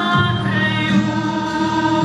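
A woman singing into a microphone with musical accompaniment, holding long notes.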